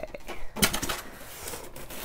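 Handling noise of a polystyrene foam packing block around a sewing machine as it is tipped over and set down on a table: light rubs and a few knocks, the sharpest knock a little over half a second in.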